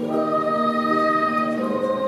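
Children's choir singing in several parts, holding long notes that change pitch every second or so.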